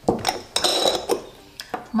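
A black plastic screw lid twisted off an amber glass jar: a click, then a grating scrape of the threads, followed by two short knocks about a second in and near the end as the jar and lid are set down on a stone counter.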